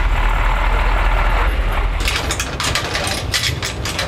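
Truck engine idling with a heavy low rumble. About halfway through the rumble drops away and a rapid clatter of sharp metallic clicks takes over.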